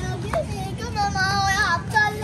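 A child's high voice holds a long, wavering sung note for about a second, over a steady low rumble.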